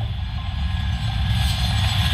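A low rumbling drone with a hiss swelling over it and slowly growing louder: a dramatic tension effect in a TV drama's background score.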